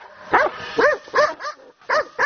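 A pack of dogs barking repeatedly, about five sharp barks in quick succession, squaring up to free-range mountain pigs.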